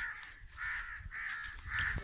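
A crow cawing repeatedly, about four caws in quick succession.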